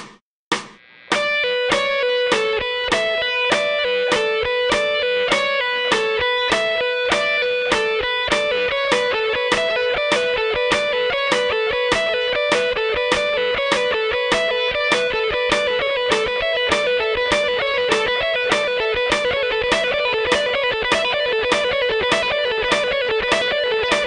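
Electric guitar playing a repeating B minor pentatonic lick over a steady clicking beat, about two clicks a second. A few count-in clicks come first, and the guitar enters about a second in. The lick is picked faster in stages, from two to three, four and then six notes per beat.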